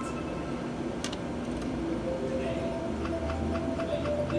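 Spartacus Gladiator of Rome video slot machine: a sharp click about a second in, then evenly spaced ticks as the reels spin, over the machine's steady background tones. Voices murmur in the background.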